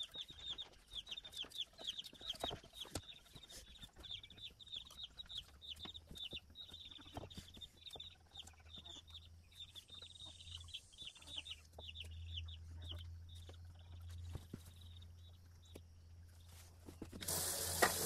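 Faint chickens clucking repeatedly in the background, with scattered light clicks from knife work on the carcass. Near the end a sink faucet starts running water.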